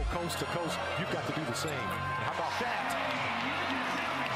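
Basketball bouncing on a hardwood court during NBA game play, a few sharp bounces over a bed of background music and voices.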